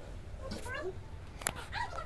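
Faint baby vocalizing in a few short rising sounds, with one sharp tap about one and a half seconds in.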